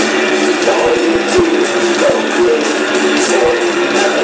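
Live death metal band playing: heavily distorted electric guitars over drums, a dense continuous wall of sound with low drum hits punching through at irregular intervals.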